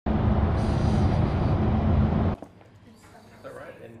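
Road noise inside a car travelling at motorway speed: a loud, steady rumble of tyres and engine that cuts off abruptly about two seconds in, leaving quiet room tone with faint speech near the end.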